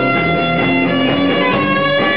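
Live band music: a saxophone plays held notes over guitar.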